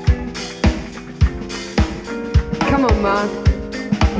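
Live funk band playing with drum kit, electric bass, electric guitar and keyboards. Kick and snare keep a steady beat under held chords and some bending melodic notes.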